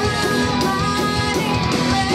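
A metal band playing live: distorted electric guitars over a steady, quick drum beat, with a held, wavering melody line above, likely the female lead voice.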